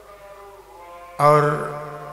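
A man's voice over a loudspeaker system, drawing out the word "aur" ("and") in a long, chant-like sermon intonation held on one pitch, with heavy echo. It starts about a second in, after a faint ringing tail of the previous words.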